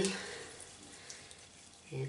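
Hands being rubbed together with an exfoliating hand scrub: a faint, steady rubbing hiss.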